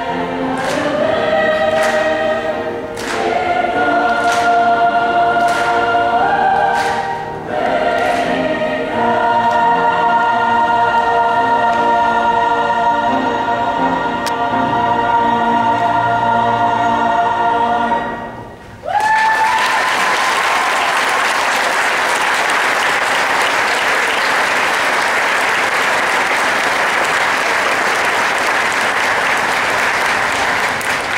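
A mixed choir singing slow, held chords, the song ending about eighteen seconds in. The audience then breaks into applause that runs on steadily.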